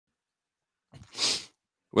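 A single short burst of breath noise from a person, lasting about half a second and starting about a second in.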